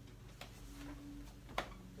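Quiet room with a low steady hum and two small clicks, the sharper one about a second and a half in.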